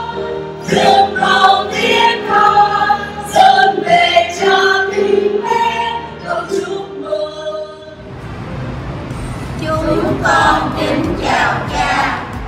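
A church choir of mostly women's voices sings a Vietnamese congratulatory hymn. About two-thirds of the way through, the singing cuts off and gives way to a hissy room noise with voices.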